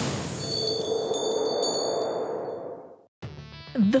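Title-card transition sound effect: a rushing whoosh with high chiming tones ringing over it, fading out about three seconds in. Background music comes in just after.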